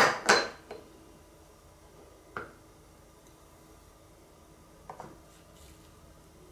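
Kitchenware being handled: a plastic funnel set onto a glass jar with two sharp clicks, a single knock a couple of seconds later, and a few faint clicks near the end as a glass bowl is lifted for pouring.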